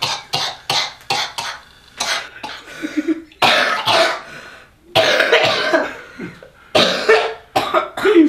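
A man and a boy laughing hard in quick, breathy bursts, some of them coughing gasps for air.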